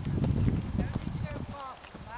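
Horse cantering on grass turf, its hoofbeats dull low thuds that fade away about one and a half seconds in.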